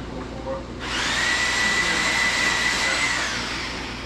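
A small electric motor-driven tool whirs for about two and a half seconds, starting suddenly, holding a steady high whine over a hiss, then winding down in pitch as it stops.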